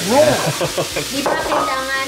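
Raw diced chicken pieces tipped into a hot frying pan of oil, onion and garlic, sizzling and frying as they land. A voice exclaims with rising and falling pitch over the sizzle, loudest just after the chicken goes in.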